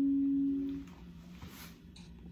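Final held note of a Fender Telecaster electric guitar ringing out as one steady tone and fading away within the first second. After it, only faint handling noise.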